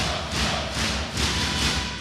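Arena crowd clapping and chanting together in a steady rhythm, about three claps a second.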